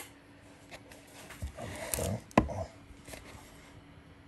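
Faint handling noises with one sharp click a little past halfway through.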